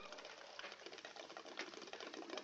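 Faint, steady chirring of night insects, heard as a fast, even ticking.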